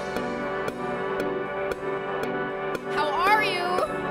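Live band music with sustained keyboard chords and a light tick about twice a second. About three seconds in, a wordless vocal line comes in, sliding and wavering in pitch.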